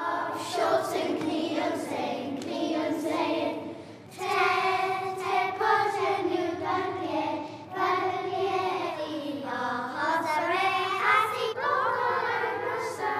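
A group of young children singing a song together in unison, with a short break between phrases about four seconds in.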